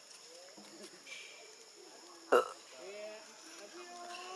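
Faint voices with one short, loud grunt-like vocal sound a little past halfway.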